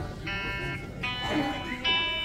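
Electric guitar played through an amp, single notes plucked one after another and left to ring, three in turn, as the strings are checked for tuning between songs.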